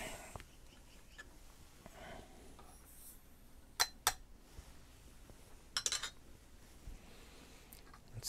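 Ball powder being tipped from a metal scale pan through a plastic funnel into a .30-06 rifle case. It is mostly quiet, with two sharp clinks about four seconds in and a brief rattle of ticks near six seconds.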